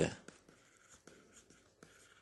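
Faint scratching and light taps of a stylus writing on a tablet screen.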